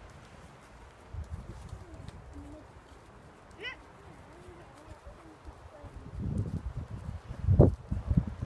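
A horse's hooves trotting on a soft arena surface, dull and muffled, with a bird calling in the middle. Low rumbling thumps grow louder over the last two seconds; the loudest comes just before the end.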